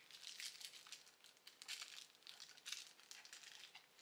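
Faint crinkling and rustling of a small box and its packaging being handled, with a scatter of small clicks.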